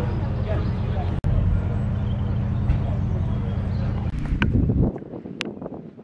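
Background voices over a steady low rumble, cut off suddenly about five seconds in, leaving only a few faint clicks.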